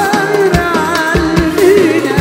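Live Arabic band music: a darbuka and low drum strokes keep a steady dance beat under electric bass, violin and keyboard, with a male voice singing an ornamented melody.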